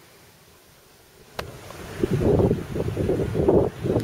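Faint hiss, then a click about a second and a half in. After it, loud, gusty wind buffeting the microphone, rising and falling in irregular gusts.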